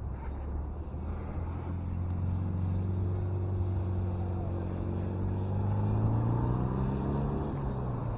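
A motor vehicle driving past on the nearby road: its engine note grows louder and rises slightly in pitch to a peak about six seconds in, then fades, over a low steady rumble.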